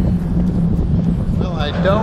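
Steady road rumble and wind on the microphone, with a continuous low hum, as a car drives over the open steel grate deck of a truss bridge. A man's voice starts about one and a half seconds in.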